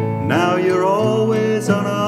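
A song with a sung melody over acoustic guitar accompaniment, the voice sliding into held notes.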